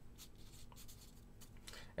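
Sharpie felt-tip marker drawing lines on paper, faint scratchy strokes of the tip.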